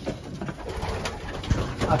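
Racing pigeons cooing in a small wooden loft, with a single knock about one and a half seconds in.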